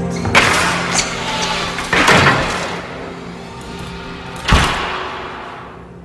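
Soft background music fading out, broken by three loud crashing bangs spread over a few seconds, each ringing on briefly.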